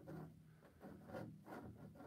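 Faint scraping of a palette knife on canvas, a few short strokes, over a faint steady low hum.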